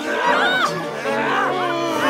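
Several voices yelling and whooping at once, drawn-out cries that slide up and down in pitch, the shouts of a staged stage fight, over an orchestra holding low sustained notes.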